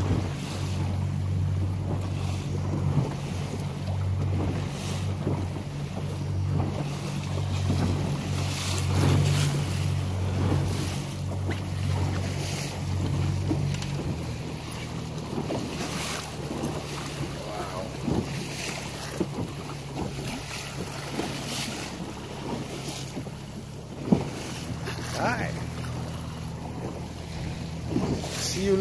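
Yamaha outboard motor on a small boat running at low speed with a steady low hum that drops away about halfway through, under wind buffeting the microphone and water splashing at the hull, with a short sharp splash near the end.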